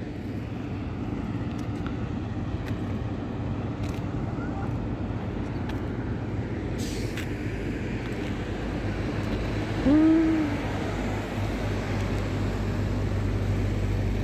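Steady road and engine noise heard inside the cabin of a moving car, with a constant low hum.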